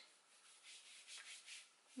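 Near silence with faint, soft rustling of a linen dress being held up and handled, a few brief swishes in the middle.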